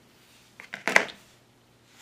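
A few small clicks and a rustle, then one sharp snip about a second in, from scissors cutting a sticky-backed strip of plastic flat-back pearls.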